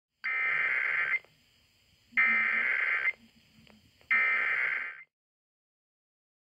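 Emergency Alert System SAME header: three bursts of digital data tones, each just under a second long and about a second apart, which encode the alert as a Required Weekly Test, heard over AM radio.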